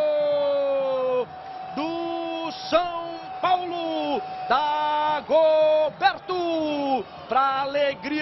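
A television football commentator's long drawn-out goal cry, held on one slowly falling note until about a second in, then a run of short, loud, sung-out shouts.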